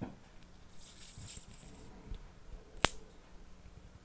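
Fingers working a needle into a small white disc for a homemade floating compass: a light, scratchy rustle for about a second, then one sharp click a little before the end.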